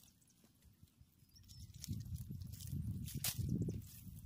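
Hands scraping and scooping loose soil out of a shallow pit, a soft irregular rustle with a few faint clicks that starts about a second and a half in.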